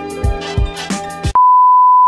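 Music with a steady beat, which cuts off abruptly about two-thirds of the way in. It is replaced by a loud, steady, high-pitched test-tone beep: the reference tone that goes with TV colour bars.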